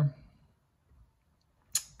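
A pause in a small room, near silent, broken near the end by one short, sharp, high-pitched click.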